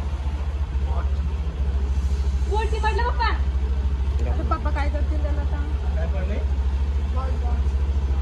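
An engine running steadily nearby, a deep low throb with a fast even pulse, under brief bits of people's voices.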